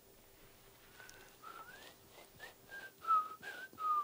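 A person whistling a short run of about eight notes, some sliding upward, starting about a second in.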